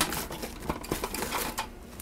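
The plastic lid of a 14-cup food processor clicking and rattling as it is unlocked and lifted off the bowl, along with the plastic-wrap sheet beneath it rustling. A sharp click comes right at the start, followed by a run of lighter, irregular clicks.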